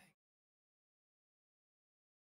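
Silence: guitar outro music cuts off right at the start, then nothing.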